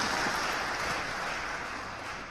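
Audience applause dying away, the clapping thinning and fading steadily.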